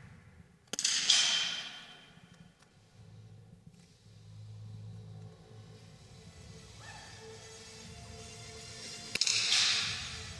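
Smallbore .22 target rifle shots on an indoor range: one just under a second in and another about a second before the end, each a sharp crack followed by a louder report that rings out in the hall.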